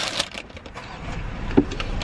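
Brown paper takeout bag rustling and crinkling as it is lifted and handled, loudest right at the start, then scattered faint crackles.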